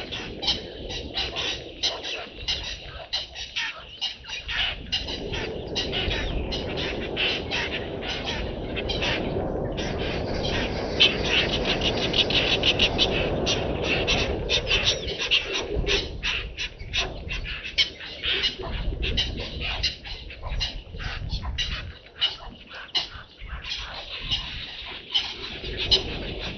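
Birds chirping and calling rapidly in a dense chorus. A low rushing noise swells underneath through the middle.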